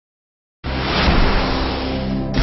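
Silence, then about half a second in a sudden loud rushing whoosh over a low steady drone: an intro sound effect for an animated logo.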